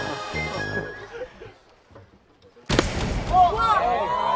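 Laughing voices die away, then about three seconds in a sudden loud whoosh hits and turns into falling whistling tones: a cartoon-style sound effect laid over a ball in flight.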